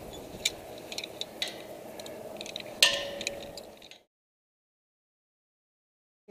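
Scattered light clicks and clinks of climbing hardware, such as hooks and carabiners, on a steel lattice tower, with one sharper click nearly three seconds in. The sound then cuts off to dead silence for the last two seconds.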